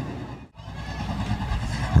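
Low, steady rumble of USRA Hobby Stock race cars' engines as the field circles at slow pace under caution. The sound drops almost to nothing about half a second in, then the rumble returns.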